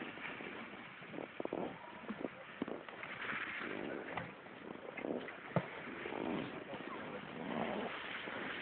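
Snowboard sliding and scraping over packed snow on a downhill run, a steady hiss broken by a few sharp knocks, with a faint voice.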